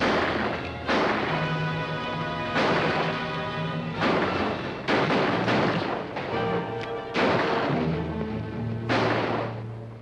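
A string of gunshots, about eight sharp reports spread over ten seconds, each trailing off, over dramatic orchestral music.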